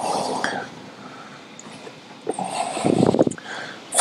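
Metal parts of a Model T brake drum and drive plate scraping and knocking as the assembly is set down onto a main shaft. There is a short scrape at the start, then a louder rough grating sound of about a second a little past halfway, and a few light clicks.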